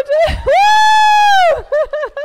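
A woman's loud, celebratory whoop through a microphone: short laughing yelps, then one long high "woooo" held for about a second, then more quick laughing yelps. A brief low thump sounds just before the long whoop.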